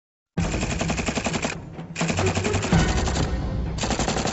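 Machine gun firing in three rapid bursts of evenly spaced shots. The first two bursts last about a second each, with short breaks between them, and the third starts near the end.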